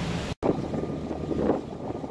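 Wind buffeting the microphone over open river water, gusting unevenly, with a low steady rumble underneath.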